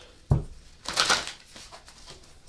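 A deck of tarot cards being shuffled by hand: a dull thump about a third of a second in, then a brief papery swish of cards about a second in.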